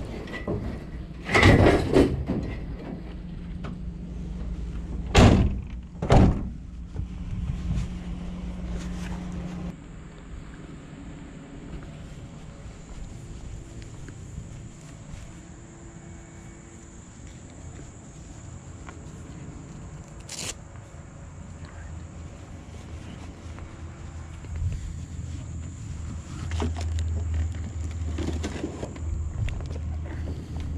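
Iron chairs being loaded into the back of a cargo van: a few loud metal clanks and thunks in the first six seconds, then one sharp knock about twenty seconds in. A low rumble runs through the last few seconds.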